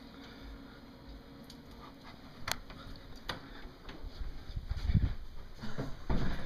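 Handling noise from a hand-held camera being carried: two sharp clicks, then low thumps and rustling that grow louder near the end as the camera is moved.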